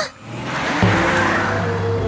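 Cartoon sound effect of a car driving past: a whoosh of tyre noise that swells and fades, joined about a second in by a steady engine hum, over background music.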